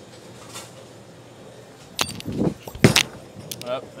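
A bowler's approach steps, then a heavy thud about three seconds in as the Roto Grip Exotic Gem bowling ball lands on the lane at release; the thud is the loudest sound, and the ball then rolls away down the lane.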